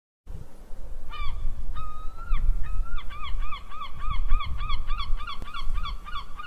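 A bird calling: a few drawn-out calls, then a quick run of short, arched calls about three a second, over a low rumble.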